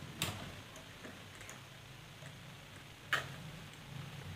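Two light clicks about three seconds apart from wires and small parts being handled on a plastic lamp casing during soldering, over faint steady room noise.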